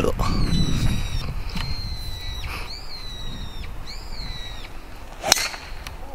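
A bird calling in the background with several long, clear whistled notes, two of them rising then falling, through the first four and a half seconds. About five seconds in, one sharp crack of a golf driver striking the ball off the tee.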